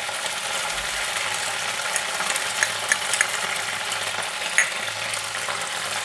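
Ginger and cumin-coriander spice paste sizzling in hot mustard oil in a non-stick wok, a steady hiss. A spatula stirring it gives scattered light scrapes and clicks against the pan.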